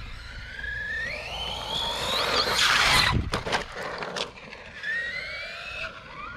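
Electric motor and drivetrain of an RC trophy truck whining up in pitch as it accelerates under throttle, twice: one long rising whine, a loud rushing burst around the middle, then a shorter rising whine near the end.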